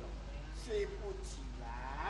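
A person's voice in short, wavering pitched cries, with breathy hisses between them.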